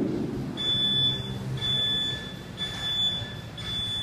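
Gym interval timer beeping a countdown: four high-pitched beeps about a second apart, each lasting most of a second, counting down to the start of the workout.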